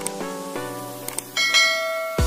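Subscribe-button sound effects over background music of short struck notes: a couple of mouse-click ticks, then a bright bell-like notification chime a little past halfway that rings on.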